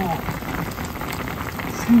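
Pot of soup at a rolling boil, a steady fine crackling of bubbles.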